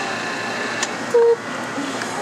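Self-serve soft-serve frozen yogurt machine running with a steady whine while it dispenses into a cup, cutting off with a click a little under a second in. A brief, loud low hum follows soon after.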